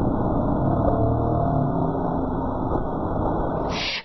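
Soundtrack of a TV awards nominations clip played back in slow motion: a low, muffled drone with slow, drawn-out tones and nothing in the higher pitches.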